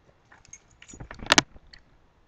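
Spoon clinking against a small ceramic cup held by a chimpanzee: a scatter of light, ringing clinks, the loudest pair just past the middle.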